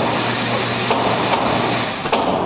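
Steady ventilation noise and hum at an indoor shooting range, with a couple of faint, sharp pistol shots from other lanes, one about a second in.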